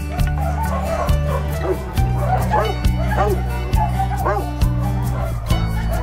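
Tosa inu puppy whining and yelping in a string of short, arching cries, over loud background music with a steady beat.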